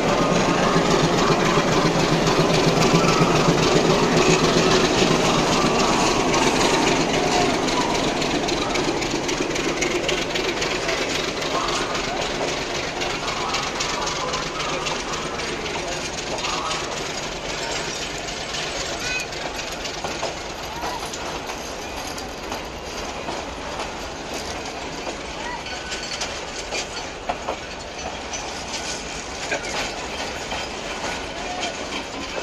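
Bangladesh Railway diesel locomotive rolling slowly past at close range, its engine loudest in the first few seconds. Then its passenger coaches roll by with steady clicking of wheels over the rail joints, the sound slowly fading.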